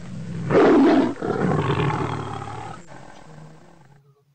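A loud animal roar in two parts: the first and loudest about half a second in, a brief break just after one second, then a second, longer roar that fades out by about three and a half seconds.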